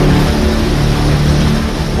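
Loud rush of fast-flowing floodwater surging and foaming, a steady even noise with a low steady hum underneath.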